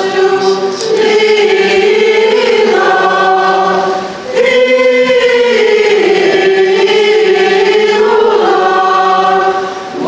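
Choir singing a liturgical hymn in long, held notes, with a brief break about four seconds in.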